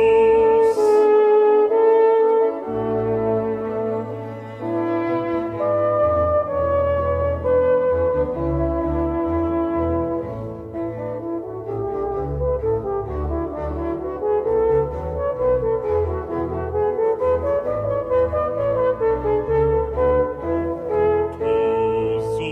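A French horn plays an ornate solo melody over a moving low line of two bassoons and continuo: the horn obbligato of a Baroque bass aria, heard here between the singer's phrases.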